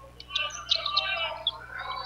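Basketball arena sound during live play: background crowd voices with short high-pitched squeaks of sneakers on the hardwood court.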